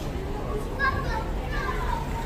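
Background chatter of a crowd, with a few indistinct voices faintly heard over a steady hum of noise.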